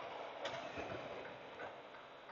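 Faint, steady road and engine noise inside a moving semi-truck cab, with a light click about half a second in.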